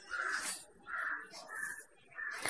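A crow cawing faintly in the background, about three short caws roughly half a second apart.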